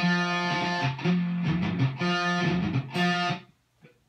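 Electric guitar picking single notes that ring out in turn, about four notes each held around a second, with the unused strings muted so only the played note sounds. The last note is cut off sharply just before the end.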